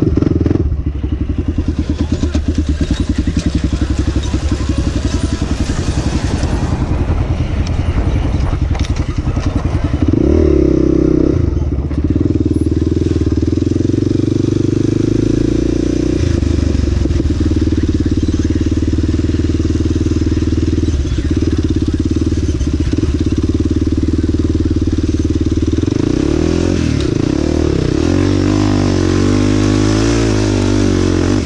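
Honda 400EX quad's single-cylinder four-stroke engine running under the rider, throttle on and off over rough ground: choppy and pulsing at first, revving up about ten seconds in, then holding a steady drone at speed before the pitch wavers again near the end.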